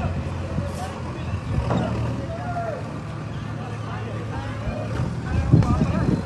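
Indistinct voices of people talking over the steady low hum of an engine running, with a louder low rumble near the end.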